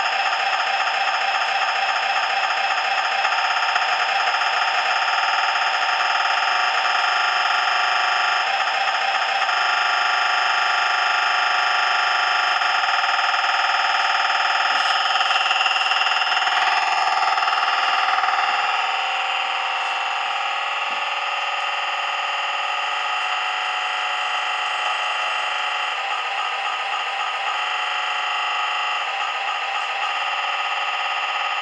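Model-railway sound decoder on its factory settings playing a small diesel engine sound through its little loudspeaker. It is a steady, buzzy, electronic-sounding drone with a fast pulsing beat at times. It changes about halfway through and then runs a little quieter.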